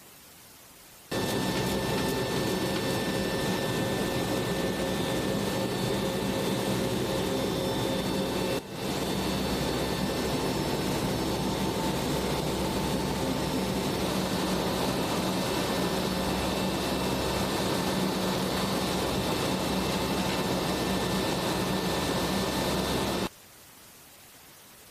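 Steady aircraft engine noise: a loud, even drone with several steady whining tones over it. It starts suddenly about a second in, drops out for a moment near the middle, and cuts off suddenly just before the end.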